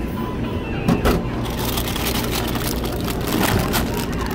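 Handling at an ice-cream vending machine's delivery door: the flap being pushed open and a plastic-wrapped ice-cream cone pulled out, a run of crinkles and clatter over a steady machine hum.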